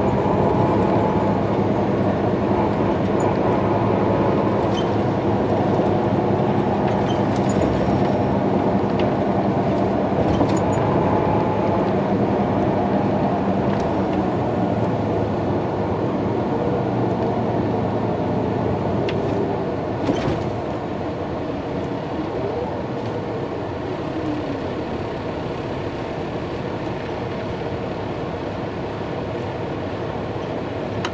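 Cabin noise inside a 2017 MCI J4500 coach on the move: its Detroit Diesel DD13 engine and tyre noise run steadily, then ease and turn quieter about two-thirds of the way through as the coach slows in traffic.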